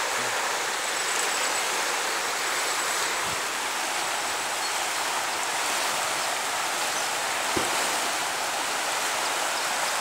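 The Arkavathi river in flood, overflowing its banks: a steady, even rush of fast-moving brown water. Two faint brief knocks come about three seconds in and near the end.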